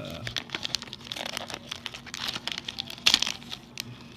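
Foil trading-card pack wrapper crinkling and crackling as it is peeled open by hand, in many small irregular crackles with a louder one about three seconds in.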